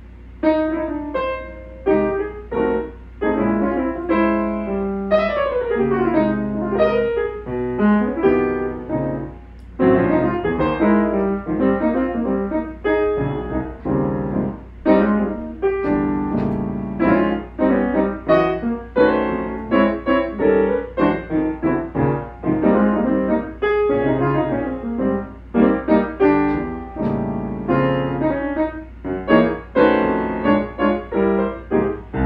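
Solo jazz piano on a grand piano: chords and quick runs of notes that begin about half a second in.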